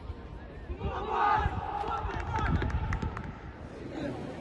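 A football team in a huddle shouting together as a group, with the shout starting about a second in and tailing off after about two seconds, and several sharp taps among the voices.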